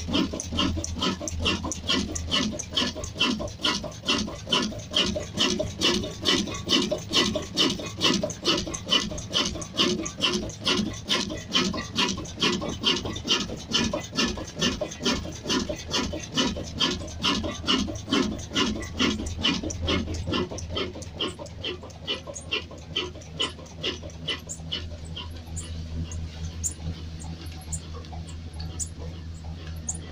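Slow-running desi diesel engine, rated 22 HP at about 300 rpm, chugging steadily at about two and a half beats a second over a low hum. After about twenty seconds the beats grow fainter and less distinct, leaving mostly the hum.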